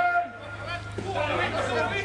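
Spectators talking and calling out, several voices overlapping in indistinct chatter, over a steady low hum.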